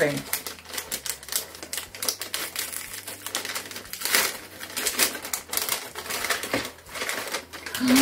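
White paper gift wrapping being unfolded by hand, crinkling and rustling in irregular quick crackles, loudest about halfway through.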